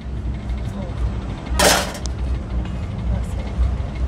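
Low rumble of street traffic and handling on a hand-held clip-on microphone, with one brief rustling hiss a little before halfway through.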